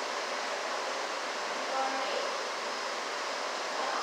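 Steady background hiss of an aquarium hall's room noise, with faint distant voices about two seconds in.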